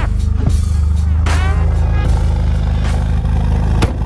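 Supercharged four-cylinder engine of a Mini Cooper S R53 running steadily, a low rumble with an even pulse, under background music.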